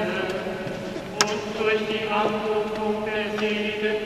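A male priest chanting a liturgical prayer in a reverberant church, his voice held on sustained notes over a steady low tone. A single sharp click sounds just over a second in.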